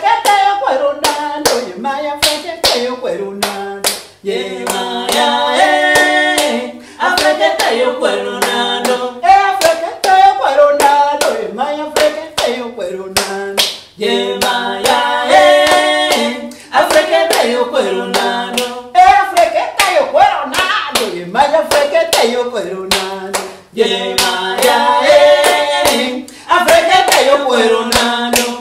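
Two women singing a song in short phrases with brief breaks, clapping their hands to a steady beat throughout.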